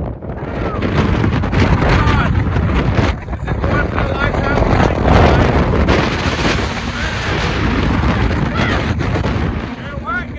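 Strong wind buffeting the microphone, a loud low rumble that surges and dips, with a man's voice talking and exclaiming partly heard through it.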